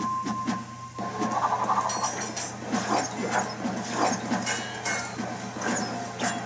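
Fight-scene soundtrack music from an animation. A ringing tone is held for about the first second, and there are a few sharp clinks about two seconds in.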